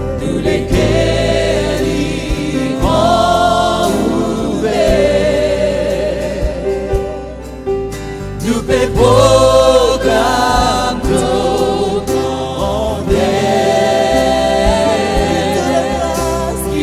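Live gospel worship music: a woman and a man singing with vibrato into microphones, backed by voices, keyboard and electric bass, in Mauritian Creole.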